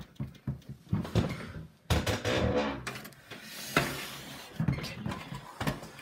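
Handling noise of cables being plugged into a desktop computer: scattered clicks and knocks, with a stretch of rustling about two to four seconds in.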